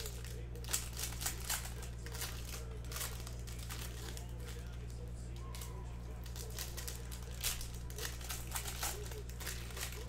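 Foil wrapper of a Topps Chrome baseball card pack crinkling with quick, irregular crackles as it is peeled open by hand.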